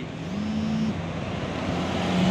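Eka intercity coach's diesel engine pulling up close, a steady low hum that grows louder as it nears, over general road-traffic noise.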